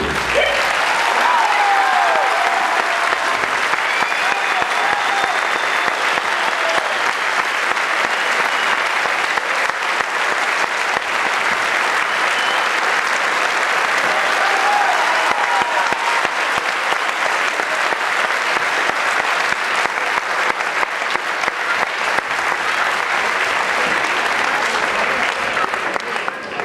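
Theatre audience applauding steadily and at length, with a few calls from the crowd rising above the clapping near the start and again about halfway through.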